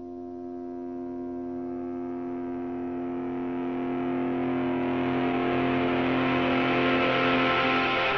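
Music intro: one sustained droning chord fades in and grows steadily louder, with a rising noisy wash beneath it.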